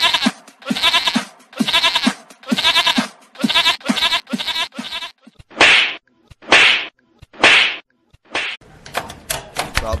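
A boy bleating like a goat: a quick string of wavering, goat-like bleats, then three harsh, breathy rasps.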